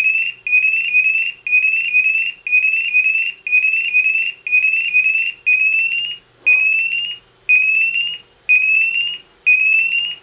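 Honeywell IQ Force portable multi-gas detector sounding its alarm in rising electronic chirps, two a second at first and then one longer chirp a second. Its sensors are still in alarm while the test gas purges after a bump test.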